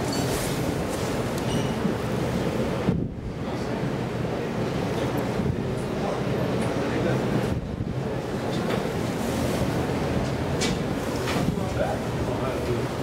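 ITK glass passenger elevator travelling: a steady low rumbling noise, with two brief dips in level about three and seven and a half seconds in.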